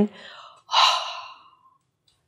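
A woman's sigh: a faint intake of breath, then a breathy exhale lasting about a second that trails away.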